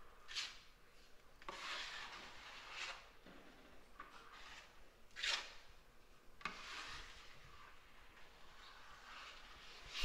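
An 8-inch drywall knife scraping joint compound onto a plaster outside corner, skim-coating to rebuild the square corner. Several faint scraping strokes of varying length, the loudest a short one about five seconds in.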